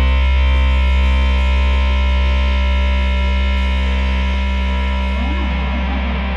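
Heavy stoner rock: a held, distorted electric guitar and bass chord rings out and slowly fades, as at the end of a track. About five seconds in, a wavering guitar note with pitch bends comes in over it.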